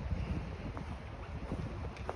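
Wind buffeting the microphone in a low, uneven rumble, with a few faint crunches of footsteps in snow.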